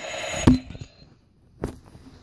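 A toy gun fired at close range: a short buzzing burst, then a sharp knock about half a second in and a second, smaller knock near the end.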